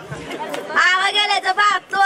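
Speech: a high-pitched voice talking, starting about half a second in.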